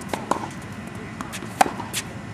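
Tennis balls knocking on a hard court, struck by rackets and bouncing: several short, sharp pops, the loudest about a second and a half in.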